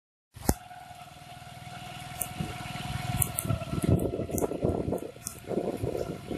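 Road traffic noise: vehicles running along a street, growing louder over the first few seconds, with a steady tone and scattered sharp clicks.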